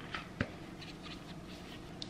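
Faint handling of a tablet being worked into a pink children's tablet case that is the wrong size for it: light scraping and small clicks, with one sharp click about half a second in.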